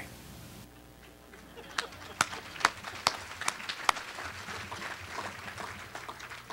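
Sparse hand clapping: sharp claps a little over two a second starting about two seconds in, then softer scattered claps.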